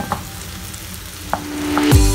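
Sliced button mushrooms sizzling in a nonstick frying pan as they are stirred with a wooden spatula, with a couple of sharp knocks of the spatula against the pan. Background music comes back in near the end.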